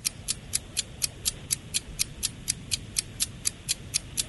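Quiz-show countdown clock sound effect ticking steadily, about four sharp, high ticks a second, as the time to answer a question runs down.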